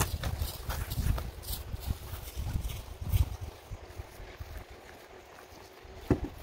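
Long-handled grass slashers swishing and chopping through short grass in irregular strokes. A low rumble lies under the strokes for the first three seconds or so, then the strokes thin out.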